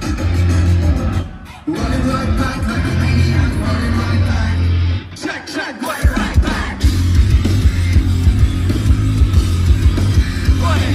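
Live heavy rock band playing loud, with heavy bass guitar and drums. The music cuts out briefly twice, about a second and a half in and again around five seconds in, then the full band crashes back in with hard-hit drums.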